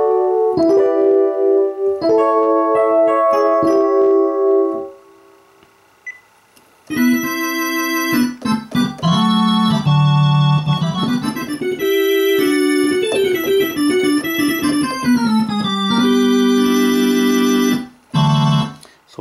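Korg Kronos playing imported Yamaha DX7 FM patches, dry with no effects. First the FAT RHODES electric-piano patch plays struck chords that die away. After a short pause, from about 7 seconds in, the 60-S ORGAN patch plays held organ chords over a falling bass line.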